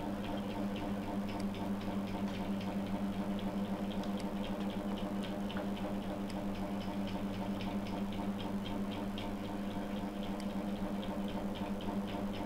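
Computer mouse clicking again and again in quick, irregular ticks, over a steady low hum.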